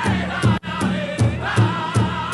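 Pow wow drum group singing a dance song in unison over a steady beat on a large pow wow drum, about two and a half beats a second. The sound cuts out for an instant just over half a second in.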